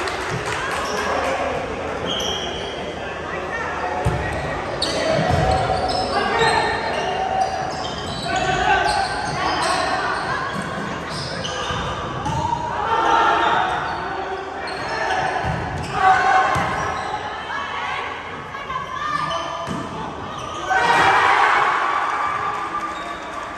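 Volleyball rally in a gymnasium: the ball struck a few times by hands and arms, sharp smacks echoing in the hall, among the calls and shouts of players and onlookers. A louder burst of shouting comes near the end.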